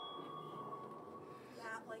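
An active sonar ping played as a sound effect: one steady high tone that starts suddenly and fades away over about a second and a half. A voice answers near the end.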